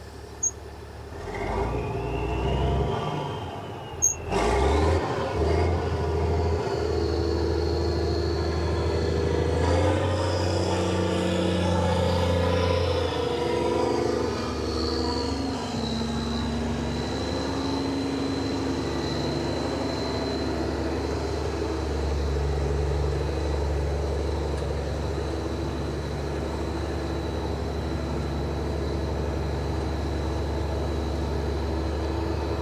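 Mack dump truck's diesel engine running as the truck is driven, a steady low drone whose pitch rises and falls with the revs. A sharp click comes about four seconds in, and a thin high whine sits over the engine from about six seconds on.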